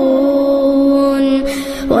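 A solo voice chanting one long, steady held note. It trails off near the end, followed by a short breath before the next melodic phrase begins.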